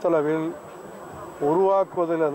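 A man speaking in short, clipped phrases: two stretches of voice, at the start and from about one and a half seconds in, with a brief pause between.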